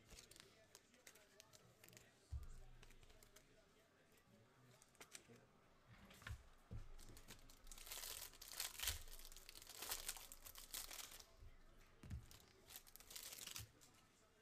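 Crinkly plastic wrapper of a trading-card pack being torn open and crumpled by hand, in a run of crackling tears about halfway through and again just before the end.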